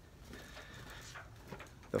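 Quiet indoor room tone with faint handling noise from a phone camera being carried along a carpeted hallway, with one soft click near the end. A man's voice starts a word at the very end.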